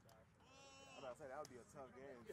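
Faint, distant voices of rugby players calling out on the field, with one drawn-out shout about half a second in, followed by broken bits of calling.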